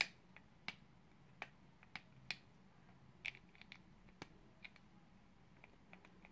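Faint, irregular light clicks of small hard parts being handled: about a dozen scattered ticks as an RC buggy shock's aluminium top is worked on its plastic pivot ball on the shock tower. The fitting has been tightened so that the top can pivot without rocking back and forth against the nut.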